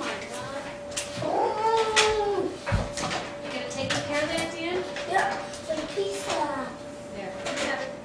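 Wordless voices, with a high-pitched call that rises and falls about a second in, over a steady faint hum and a few light knocks.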